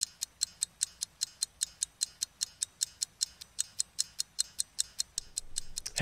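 Sound-effect ticking: sharp, evenly spaced ticks, about five a second, with a faint hiss coming in near the end.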